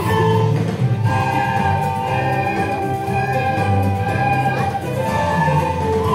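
A class of beginner children playing soprano recorders together, holding sustained notes of a holiday tune over a lower accompaniment.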